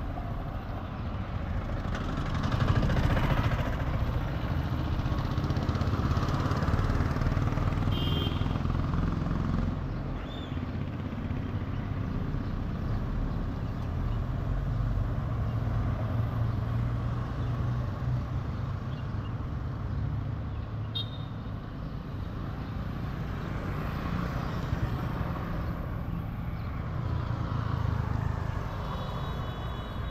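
A motor scooter's small engine running steadily while riding, under road and wind noise that swells and eases with speed. Brief high-pitched tones sound about eight seconds in and again near the end.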